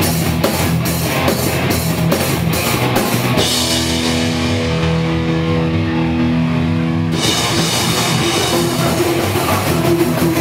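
Hardcore punk band playing live: distorted electric guitars, bass and a fast, pounding drum kit. A few seconds in, the drums and cymbals stop and a held guitar chord rings on alone for about three seconds, then the full band comes back in.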